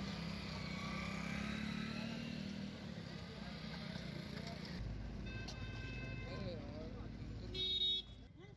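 Motorcycles riding past with their engines running, over the chatter of a roadside crowd. A brief, louder pitched tone sounds near the end.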